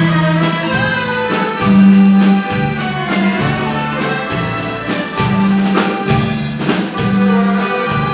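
An accordion orchestra playing a popular dance tune with a drum kit. Sustained accordion chords sit over a bass line that steps from note to note, with regular drum and cymbal hits.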